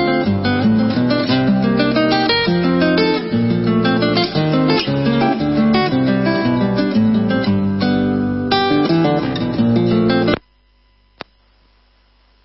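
Acoustic guitar music in the Cuyo folk style, plucked and strummed. It cuts off abruptly about ten seconds in, leaving a low hum and one faint click.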